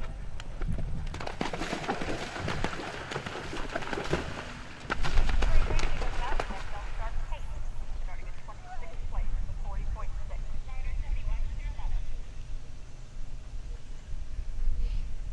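Indistinct voices of bystanders talking under outdoor noise. The noise is full of knocks and thumps in the first half and is loudest about five to seven seconds in.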